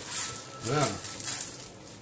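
Hulled sunflower seeds poured from a plastic bag onto a stainless steel baking tray: a brief hiss of falling seeds and crinkling plastic near the start, with a short vocal sound a little under a second in.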